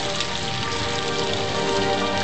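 Steady rain pattering, laid over music holding sustained notes.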